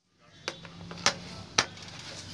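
Three light, sharp clicks about half a second apart from a screwdriver and hands on the plastic housing of a quartz heater, over a faint steady hum.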